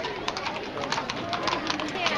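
Hooves of a pair of carriage horses clopping irregularly on brick paving as the carriage rolls past, over crowd chatter.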